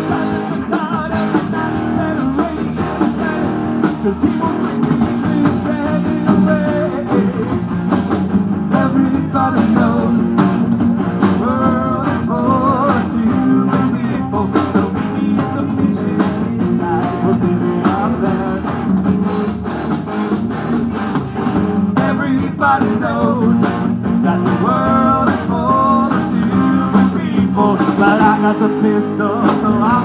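Live rock band playing: electric guitars, bass guitar and drum kit. In this instrumental stretch a lead guitar line with bent, wavering notes rises above the rhythm section.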